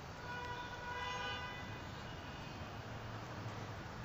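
A faint horn sounds once, holding one steady note for about a second and a half, over a low background hum.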